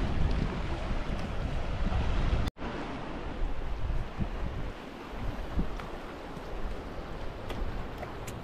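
Wind buffeting the microphone over the steady rush of a fast-flowing river. The sound cuts out for an instant about two and a half seconds in, then resumes a little quieter.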